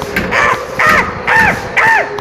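Four short, crow-like cawing calls, about half a second apart, each arching and falling in pitch.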